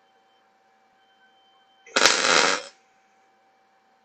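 A short MIG welding arc on steel plate: one burst of arc crackle lasting under a second, starting about halfway in and stopping abruptly.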